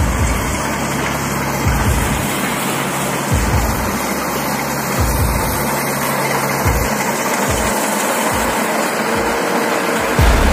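Rice combine harvester running as it cuts, a steady dense machine noise, with a low thump recurring about every second and a half.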